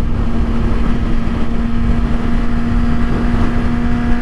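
Kawasaki ZX-6R 636 inline-four engine running at a steady cruising pitch at highway speed, its note holding constant under a loud, even rumble of wind noise.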